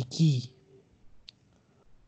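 A short spoken syllable, then quiet with a single sharp, faint click a little over a second in.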